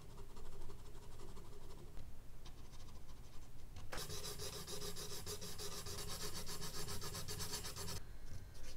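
Drawing tools rubbing over charcoal on medium-surface sketch paper: soft, faint strokes first, then about four seconds in a sudden change to louder, rapid, scratchy strokes, many a second, as a brush is scrubbed over the paper.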